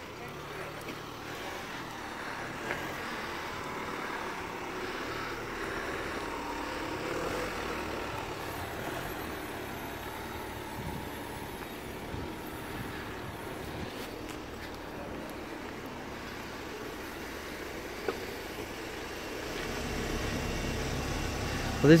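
Outdoor street ambience: a steady hum of distant road traffic with faint voices in the background. A low rumble comes up near the end.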